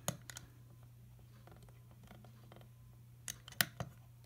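Rotary knob on an N1201SA antenna analyzer being turned, giving sharp clicks: a couple at the start and a quick cluster of about four near the end. A faint steady low hum runs underneath.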